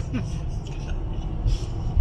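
Steady low road and engine rumble heard inside a car's cabin while cruising on a motorway.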